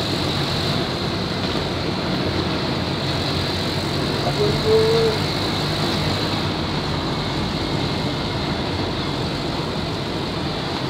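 Steady engine hum and wind and road noise from a motorcycle riding along a street. A short higher-pitched tone sounds about halfway through.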